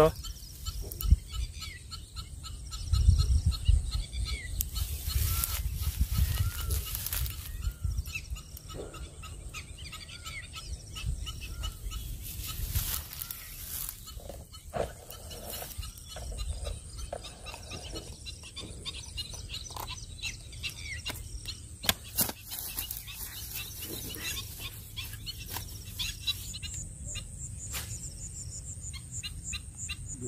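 Outdoor lakeside ambience: birds calling in series of short repeated notes, with wind rumbling on the microphone and occasional handling clicks. A cricket's steady high chirring comes in near the end.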